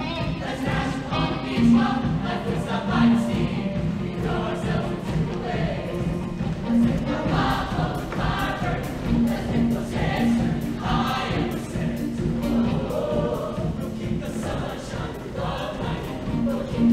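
Mixed-voice high school show choir singing together over a live backing band, with sustained sung notes and a held low note running under the voices.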